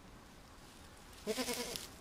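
Young raccoon kit giving one short, wavering cry, about half a second long, a little past the middle.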